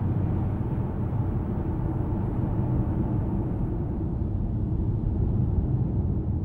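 Steady low rumble of a car driving. A faint hiss above it dies away about four seconds in.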